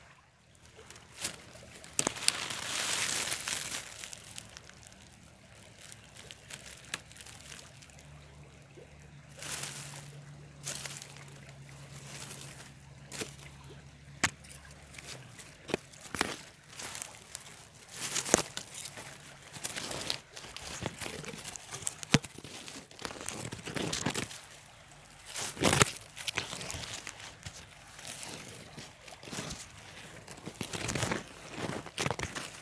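Dry leaves and loose soil rustling and crunching in bursts, with scattered sharp clicks; a longer burst comes about two seconds in, and a faint low hum runs through the middle.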